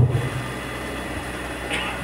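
A pause in amplified speech: a steady low hum and hiss of room noise carries on, with the speaker's last syllable trailing off right at the start.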